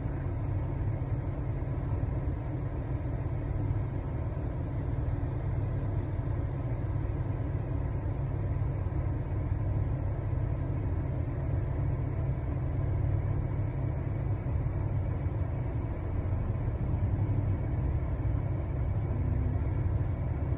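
Steady low rumble inside a car's cabin, with no breaks or sudden sounds.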